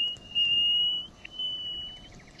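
Nightingale song: long, pure, high whistled notes, each held for about a second, with short breaks between them.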